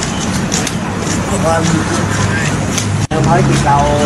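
A man speaking Thai to a group outdoors, over a steady low rumble. The sound drops out for an instant at an edit about three seconds in.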